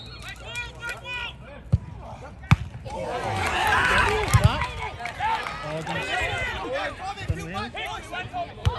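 A football struck hard for a free kick gives one sharp thud about two and a half seconds in. Spectators shout and cheer as the shot goes in on goal, with a couple more thuds amid the shouting, and crowd chatter around it.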